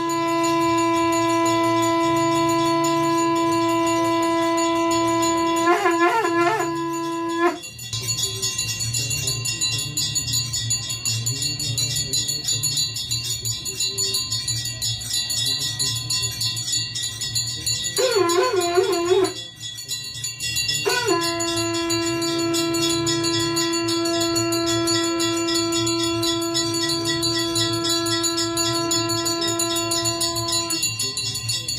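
Conch shell (shankh) blown in a long steady note that wavers and breaks off about seven seconds in. Then temple bells ring in a fast, steady rhythm, with a short wavering conch call a little past halfway and another long, steady conch blast starting about two-thirds of the way through.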